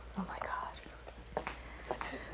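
High-heeled shoes stepping on a hard stage floor: a few quiet clicks, with a faint whisper early on.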